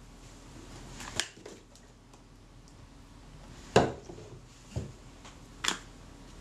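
A few sharp, light clicks and taps of small tools and parts being picked up and set down on a work surface, spread apart by quiet room tone.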